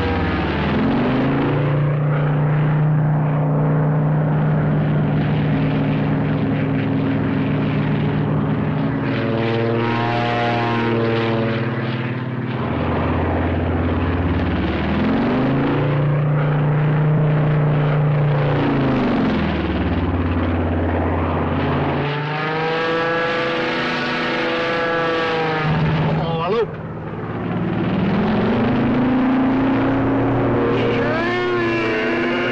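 Propeller airplane engines running loudly through stunt flying, their pitch rising and falling several times as the planes dive, climb and swing past.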